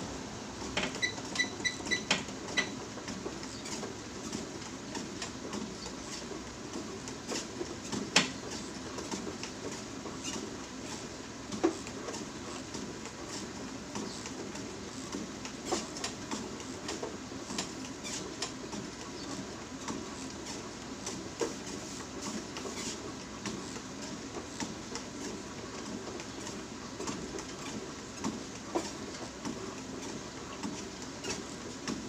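Treadmill running at a slow walking pace. A row of short console beeps comes about a second in as the speed is raised to 3.0 km/h, then footfalls knock on the moving belt over the steady belt and motor noise.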